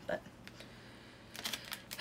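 A clear cellophane bag crackling as it is handled, a quick cluster of crinkles near the end.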